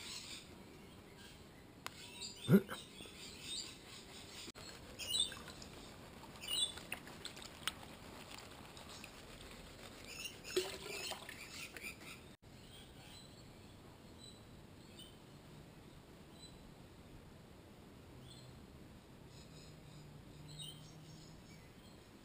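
Faint, scattered clicks and rattles of gravel and small rocks shifting in a plastic gold pan as it is worked by hand, with a few faint high chirps between them.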